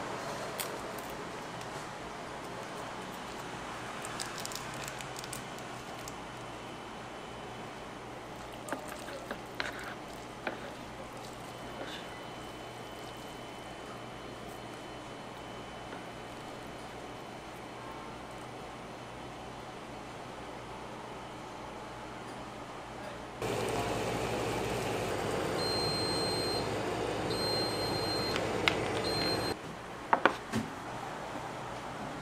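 Faint steady room noise with a few light clicks and taps of handling food and chopsticks. About 23 seconds in, an automatic ramen cooker's louder steady running noise sets in, and near the end it gives three short high beeps.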